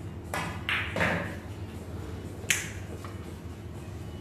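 A pool shot on a 9-ball table: the cue tip strikes the cue ball, followed by a quick run of hard knocks from balls colliding and a ball being pocketed in the first second or so. About two and a half seconds in comes a single sharp, bright click of billiard balls meeting.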